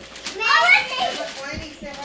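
A young child's high-pitched voice, with a rising, unworded call about half a second in followed by a few shorter vocal sounds.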